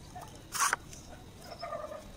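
Homemade wooden pump drill being worked into a board: a short, sharp scraping rasp about half a second in, then a brief squeak near the end as the string and spindle turn.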